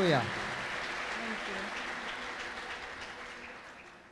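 Congregation applauding, a steady clapping that gradually dies away. A single voice rises and falls at the very start.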